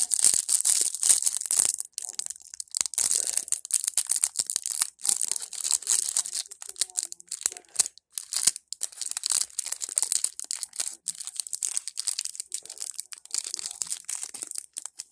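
Clear plastic trading-card pack wrapper crinkling and crackling as it is handled, with cards flicked and slid through the fingers, as irregular rustling and clicks.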